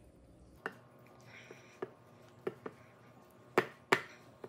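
A silicone spatula taps and scrapes against a glass mixing bowl as cake batter is scooped out into a bundt pan. There are scattered sharp taps, and the loudest two come close together near the end.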